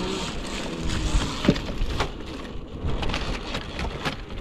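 Dirt-bike tyres knocking and crackling over a stack of felled timber logs: many sharp clicks and knocks over a rough rumble.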